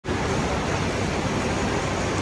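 Steady background noise of a large, busy airport terminal hall: an even hiss over a low rumble, with no distinct events.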